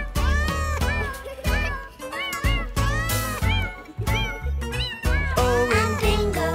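Cartoon cat voice giving a string of short, arching meows in time with an upbeat children's song backing track, a couple of them drawn out longer.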